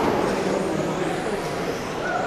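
A field of electric 13.5-turn brushless RC touring cars racing, their motors giving a steady whine that echoes in a large hall.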